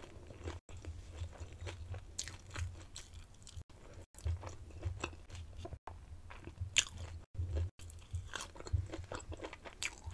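Close-miked eating: crisp fried and roasted food being bitten, crunched and chewed, with wet mouth clicks throughout. The loudest crunch is a fresh bite just before seven seconds. A few very short gaps of dead silence break the sound.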